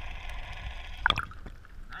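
Muffled underwater sound from a submerged camera: a low rumble with gurgling water, and a splash about a second in as the camera comes up through the surface.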